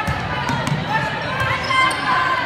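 Spectators talking in a gymnasium during a volleyball rally, with a few sharp smacks of the volleyball being hit.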